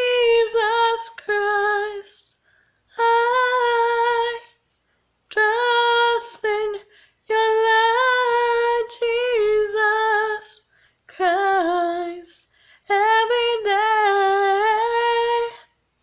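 A woman singing unaccompanied in a high register, in six held phrases with small pitch bends, separated by brief silences.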